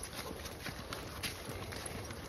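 Footsteps of a person and dogs walking on a leaf-covered dirt trail: a run of faint, irregular ticks and scuffs.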